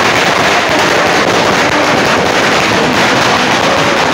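A string of firecrackers bursting on the road: a loud, continuous crackle of rapid small bangs.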